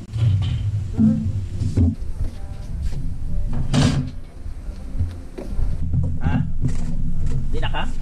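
Knocks and clanks from a small kettle barbecue's metal grate and lid being handled, the loudest about four seconds in, over background music.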